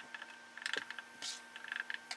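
Gloved hands handling painting tools around a foil drip tray, making a few quick clusters of light clicks and short scrapes over a faint steady hum.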